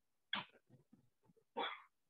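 Two short, faint dog barks, about a second and a quarter apart.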